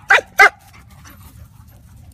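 A dog giving two short, sharp play barks in quick succession in the first half second, during rough-and-tumble play.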